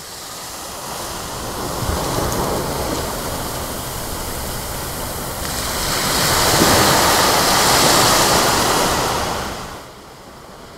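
Ocean surf on a beach: a steady rushing wash that swells louder from about halfway through, then fades away just before the end.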